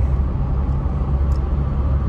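Steady low rumble of road noise inside the cabin of a Jeep Wrangler Rubicon 4xe while it is driving.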